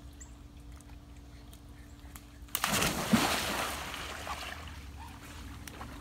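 A person jumping into a swimming pool about two and a half seconds in: a sudden loud splash, then the water churning and sloshing as it fades over the next couple of seconds.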